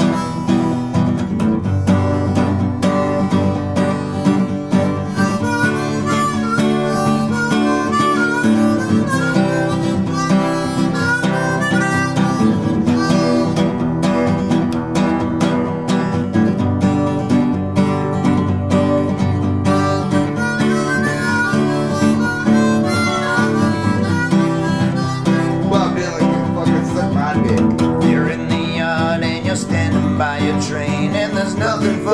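Instrumental intro of a country song: acoustic guitar strumming with a harmonica playing over it.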